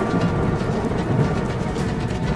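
Dry grassland fire burning with a steady low rumble, with music laid over it.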